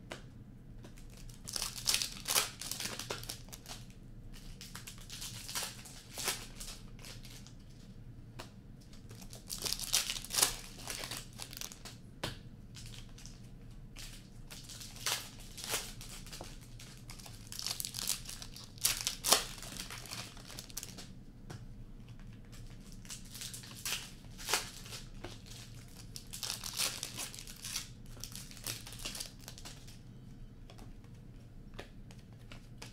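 Foil hockey card pack wrappers being torn open and crinkled, with cards being handled. The crackling comes in clusters about every eight seconds.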